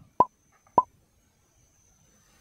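Two short, sharp pops about half a second apart, each with a brief ringing tone.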